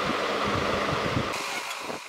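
Steady rushing background noise, with a few faint low vocal sounds in the first second; the hiss drops away abruptly about one and a half seconds in.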